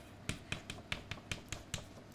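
Chalk on a blackboard: a quick series of about nine sharp taps and clicks as short strokes are written.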